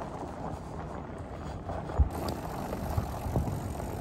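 Fat bike rolling along a dirt trail: a steady rumble of the wide tyres with wind on the microphone, and a few low thumps over bumps, the sharpest about halfway through.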